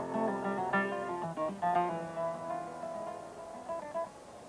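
Guitar music: a run of plucked single notes and chords, each ringing and decaying, dying away near the end.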